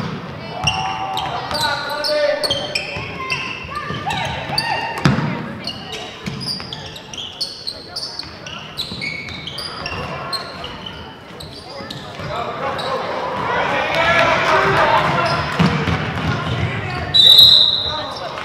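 A basketball game on a hardwood gym floor: sneakers squeak, the ball is dribbled, and the spectators' voices swell in the hall. A referee's whistle blows once, sharply, near the end.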